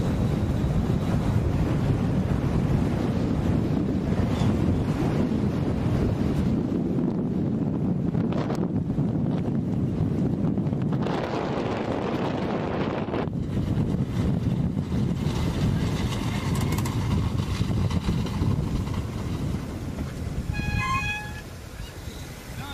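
Wind buffeting a moving camera's microphone, a steady low rumble as the camera travels along the runway with the cyclists beside a landing human-powered aircraft. Near the end the rumble drops and a brief high-pitched sound is heard.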